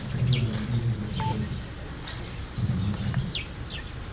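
Small birds chirping, with short calls that fall in pitch, two close together near the end.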